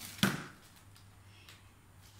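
A single short, loud crackle of a plastic shopping bag full of clothes being swung, about a quarter second in, fading quickly, followed by quiet room sound with a steady low hum.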